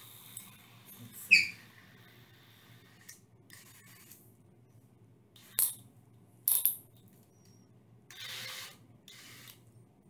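Handling sounds of a cordless drill fitted with a hole saw bit: scattered sharp metallic clicks and clinks, the loudest about a second in, then a couple of short rustling stretches near the end.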